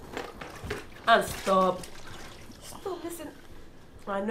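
A woman's voice in two short spoken bursts or exclamations, with a few faint clicks before them.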